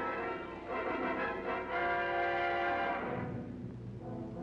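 Orchestral trailer score playing long held chords, which die away about three seconds in.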